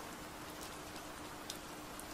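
Soft, steady rain-like hiss with a few faint drip-like ticks, and a faint steady hum beneath it.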